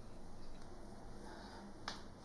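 Faint, steady background noise with one sharp click near the end.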